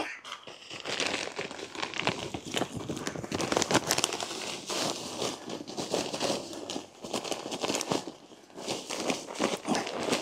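A plastic bag of potting mix crinkling and rustling in irregular crackles as it is handled and tipped into a pot.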